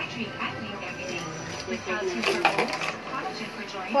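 Ice cubes clattering in a clear plastic cup as it is handled and tipped, with the sharpest clatters a little over two seconds in. Faint voices run underneath.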